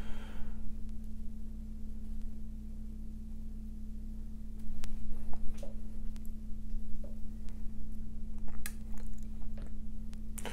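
Steady low electrical hum, with a few light clicks scattered through the second half.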